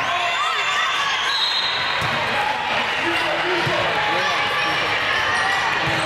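Indoor volleyball rally: the ball is struck a few times, with sharp smacks among a steady mix of players' calls and spectators' voices.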